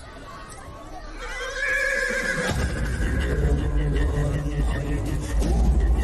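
A horse whinnies about a second in. A loud, low rumble with rapid beats then sets in and keeps going.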